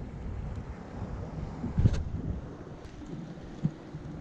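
Wind buffeting the microphone in a low, steady rumble over choppy sea, with a sharp thump about two seconds in and a smaller knock near the end.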